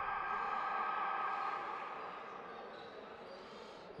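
Basketball arena horn ending a timeout: a steady buzzing tone, loudest at the start, that slowly fades away.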